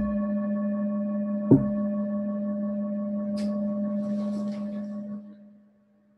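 A metal singing bowl struck once and ringing with a steady low tone and several higher overtones, with a sharp knock about a second and a half in. The ringing dies away quickly about five seconds in, as if damped.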